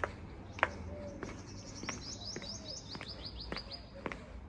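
A small bird's fast run of short, high chirps, each sliding down in pitch, about six a second, starting about halfway through. Footsteps on paving stones can be heard underneath, roughly one every half second.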